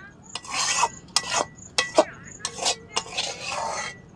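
Metal spatula scraping thick mushroom curry out of a black kadai in about five rough strokes, with a few sharp clicks of metal striking the pan.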